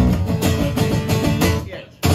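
Acoustic guitar strummed with an acoustic bass guitar playing under it, a steady live rhythm. The music fades away over the last half second.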